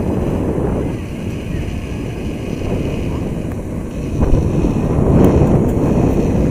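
Wind buffeting the camera microphone: a low, gusty rumble that grows louder about four seconds in.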